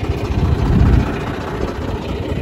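Tractor's diesel engine running steadily while it pulls a tined seed drill through the field, with a low pulsing throb that swells about half a second in and eases again after a second.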